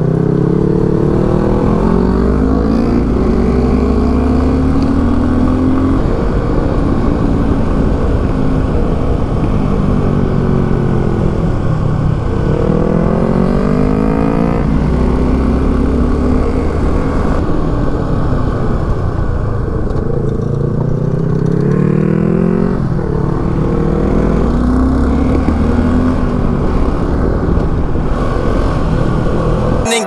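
Suzuki V-Strom 250 motorcycle engine running under a rider in hairpin bends. Its pitch climbs several times as the throttle opens and drops sharply at gear changes and when the throttle is closed, over a steady low rumble.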